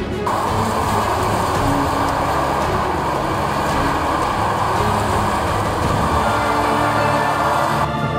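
Rough sea surf, a steady rush of breaking waves, over background music; the wave noise cuts in just after the start and stops abruptly near the end.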